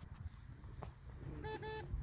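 Two short electronic beeps about a second and a half in, a single pitched tone with overtones, over a low wind rumble: the launch controller's continuity signal, showing the igniter on pad A2 is connected.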